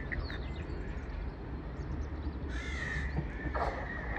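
A bird's harsh calls, with short ones at the start and a longer, louder one about two and a half seconds in, over a low steady rumble.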